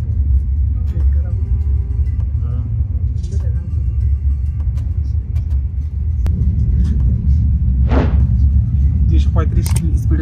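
Steady low rumble of a Haramain high-speed train heard from inside the carriage while it runs at speed. The rumble grows a little stronger about six seconds in.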